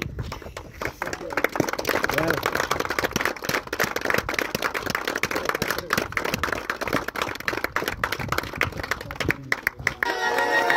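Applause by hand from a group of men: many irregular claps throughout, mixed with men's voices talking over one another.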